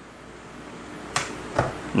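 Steady low room noise, with one light click a little over a second in as a hook-rigged soft-plastic frog bait is set down on a concrete floor.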